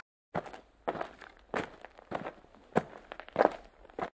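Footsteps: a run of about seven evenly spaced steps, a little under two a second.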